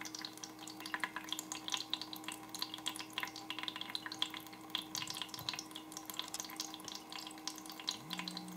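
Anti-gravity humidifier fountain: a thin stream of water falls into its basin in many small, irregular drips and splashes, over a faint steady hum.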